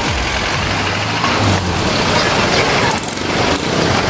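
Steady street traffic noise, with a vehicle engine humming.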